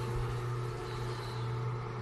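A steady low hum, unchanging in pitch.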